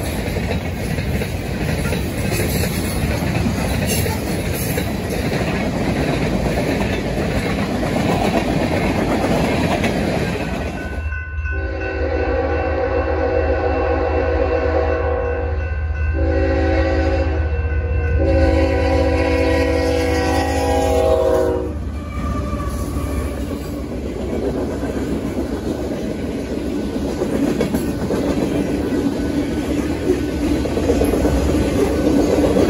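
Freight train rumbling along the rails, then a diesel locomotive's air horn sounds a chord in three blasts, the middle one shorter, its warning for a grade crossing, over the locomotive's low engine hum. After the horn, the rumble and clatter of the cars rolling through the crossing carry on.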